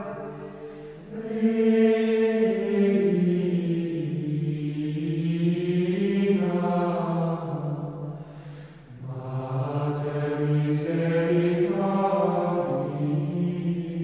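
Plainchant sung by men's voices in unison, in slow phrases of long held notes, with a breath between the two phrases about eight and a half seconds in.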